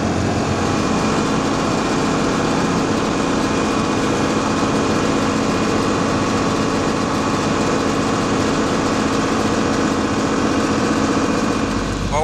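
John Deere tractor engine running steadily under load while pulling a corn planter across the field, heard from inside the cab.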